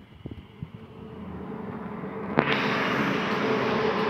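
A vehicle engine running, growing louder through the first half and then jumping sharply in level about two and a half seconds in, after which it holds a steady hum.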